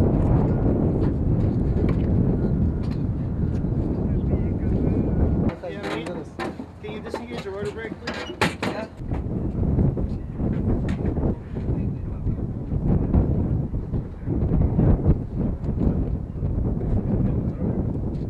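Wind buffeting the microphone in gusts, with people talking in between.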